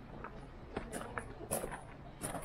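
Footsteps crunching on a gravel path, one step roughly every two-thirds of a second, starting near the middle.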